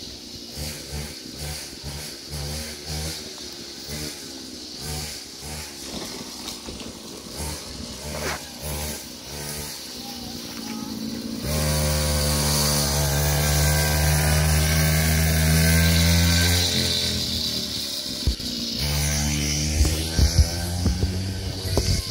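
Child's mini quad motor running. For the first half it gives an uneven, pulsing low sound. About halfway it becomes a louder, steady pitched drone, eases off briefly, then picks up again near the end.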